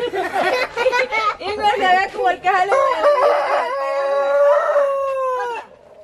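A rooster crowing once in the second half, ending on a long held note that sags slightly and cuts off shortly before the end; laughter and excited voices fill the first half.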